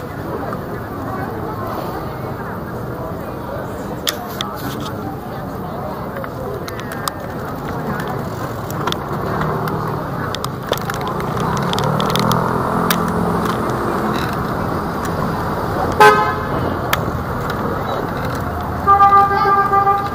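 Road traffic on a busy street, with a vehicle's engine swelling as it passes midway. About 16 seconds in there is a sharp knock and a brief horn toot, then a car horn sounds for about a second near the end.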